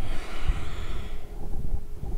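A woman breathing out audibly, close to the microphone, as she swings through a standing twist, with low thuds from her movement throughout.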